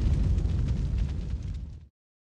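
Low rumbling tail of a cinematic boom sound effect in a logo sting, fading steadily and cutting off to silence just before the end.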